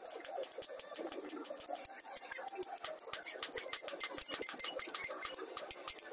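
Rapid, light hand-hammer strikes on a steel shovel blade held on an anvil, several taps a second, the loudest a little under two seconds in.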